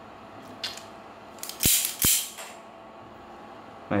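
Marvel wire stripper being worked by hand: a scraping rustle with two sharp metal clicks about half a second apart, a little under two seconds in.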